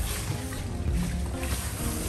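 Water spraying from a handheld shampoo-basin hose onto hair and into the basin, a steady hiss, under background music of held notes.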